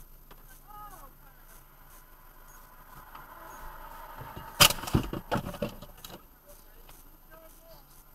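Quiet stopped-car cabin with a faint voice about a second in, then one sharp knock near the middle followed by a few lighter knocks and rattles.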